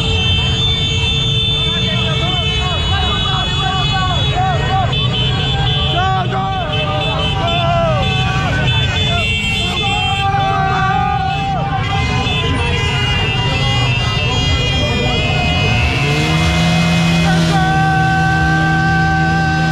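Many small motorcycle engines running together in a moving caravan, with riders shouting over them. About two seconds before the end, a steady pitched tone glides up and holds.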